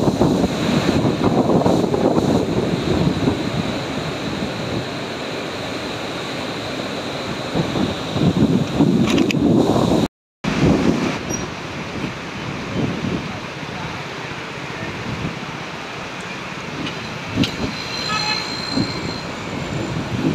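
Floodwater pouring through the open gates of a river barrage: a steady, loud roar of churning water that cuts out briefly about halfway through.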